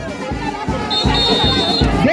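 A whistle blast, one steady high note lasting about a second, starting about a second in. It is heard over loud music with a beat.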